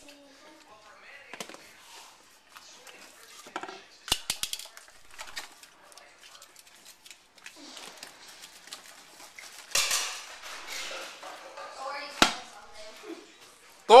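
Clinking and knocking of hard kitchen items and dishes, with a louder clattering spill about ten seconds in as something is knocked over, and a sharp knock near the end.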